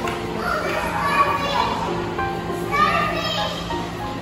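Young children talking and calling out over the busy hum of a large indoor hall, with music playing underneath.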